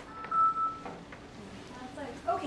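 A single short, high electronic beep: one steady tone lasting about half a second.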